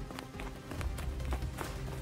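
Background music from an animated cartoon, with light cartoon running footsteps tapping at an uneven pace.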